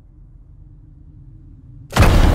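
Trailer sound design: a low, dark rumbling drone, cut off near the end by a sudden loud boom hit.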